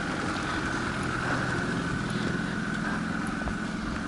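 A car driving slowly past close by and pulling away, its engine running steadily.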